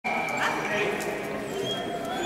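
Dogs barking and yipping, with people talking in the background.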